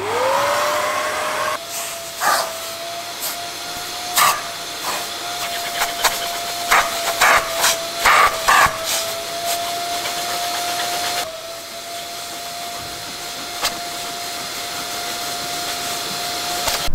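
Kärcher NT 30/1 wet-and-dry vacuum switching on, its motor spinning up to a steady whine and then running. Its crevice nozzle sucks hair and dirt out of a fabric car seat, with scattered short clicks from the nozzle and debris.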